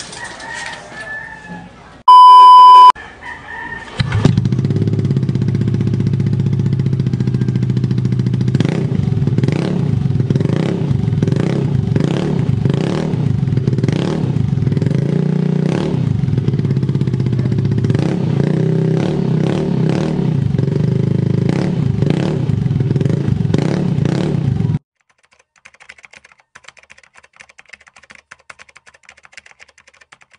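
Yamaha Aerox 155 scooter's single-cylinder engine idling through an Akrapovic slip-on exhaust with its silencer insert removed. It comes in loud about four seconds in: a steady, deep exhaust note broken by frequent irregular pops, cutting off suddenly near the end. Before it there is a faint rooster crow and a loud electronic beep, and after it faint keyboard-typing clicks.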